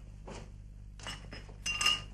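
A soft swish of a cloth cape being draped, then a series of light glass clinks with brief ringing, loudest near the end, as a glass bottle or jar is handled.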